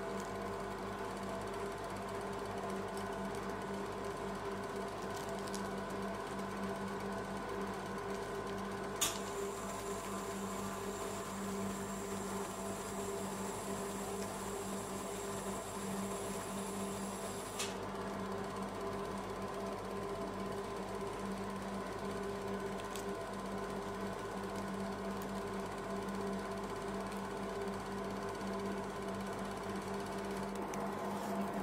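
Steady electric hum of an ice-roll machine's refrigeration unit running under the cold plate. A high whine switches on with a click about a third of the way in and cuts off with another click just past the middle.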